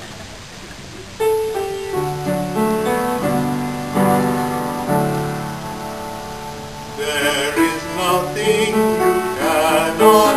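Piano starting an accompaniment introduction about a second in, playing slow sustained chords and melody notes; about seven seconds in a man's singing voice joins, with vibrato.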